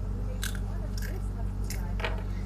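Crunchy chewing of a wafer-stick snack: four short, crisp crunches, with a steady low electrical hum underneath.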